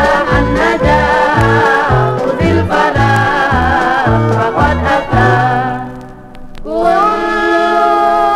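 Indonesian gambus orchestra music from a vinyl record: melody instruments over a steady low drum beat. About five seconds in the drumming stops and a held note fades briefly, then a new sustained melodic phrase comes in near the end.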